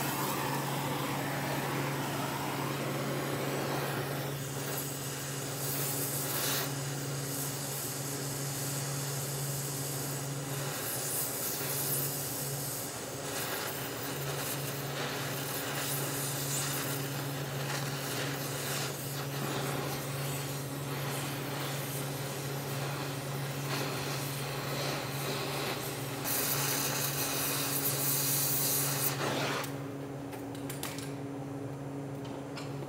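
Oxy-fuel torch flame hissing steadily as it heats the cast-iron engine block around a rusted, broken-off plug to loosen it. The hiss swells a few seconds in and again near the end, then stops abruptly as the torch is shut off.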